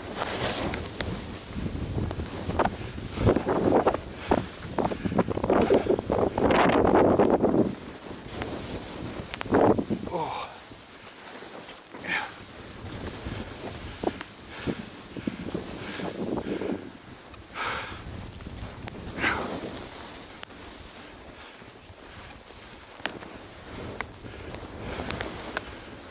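Skis swishing and scraping through snow on a descent, in a series of turns, with wind buffeting the microphone; loudest and most continuous in the first eight seconds, then quieter, with separate short swishes.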